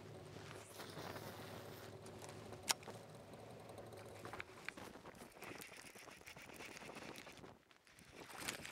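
Faint outdoor background on open water, with one sharp click about a third of the way in and a few softer ticks.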